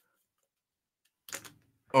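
Near silence for over a second, then a brief soft sound and a man's voice starting to speak right at the end.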